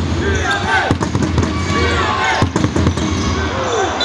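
Basketball court sounds: a ball bouncing repeatedly on a hardwood floor, with short high sneaker squeaks and voices.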